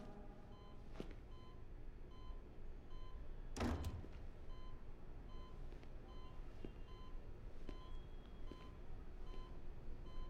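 Hospital patient monitor beeping faintly, one short high beep repeating at a steady rate. A brief swishing noise just before four seconds in is the loudest sound.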